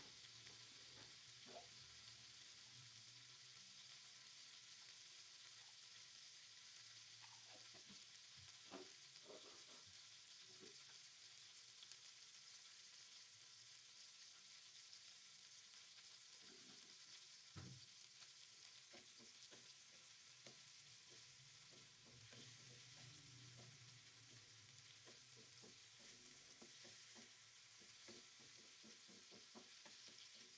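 Faint sizzle of tuna, tomatoes and chillies simmering in a little water in a frying pan as the liquid cooks down, with a few faint clicks scattered through.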